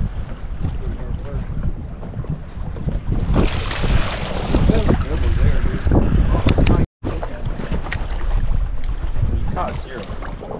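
Wind buffeting the microphone on an open boat, with water splashing at the side of the hull, louder from about three seconds in. The sound drops out for an instant near seven seconds.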